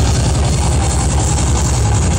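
Thrash metal band playing live: a loud, dense, unbroken wall of electric guitar and drums.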